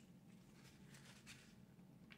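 Near silence, with faint soft mouth sounds of a taco being chewed.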